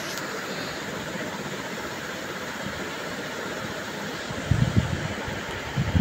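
Steady rush of wind and road noise from riding a small motorcycle at speed, with low wind buffeting on the microphone about four seconds in.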